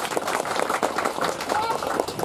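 Small crowd clapping steadily, a dense run of hand claps.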